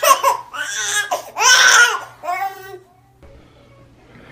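A seven-month-old baby's high-pitched fussy cries in a few short bursts, stopping about three seconds in.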